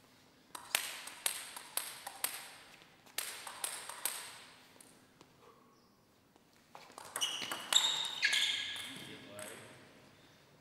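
Table tennis ball clicking sharply off rackets and the table in quick runs of hits, in a large hall. Near the end the hits give way to a short pitched shout.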